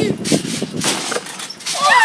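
Children's voices, ending in a high-pitched squealing laugh near the end.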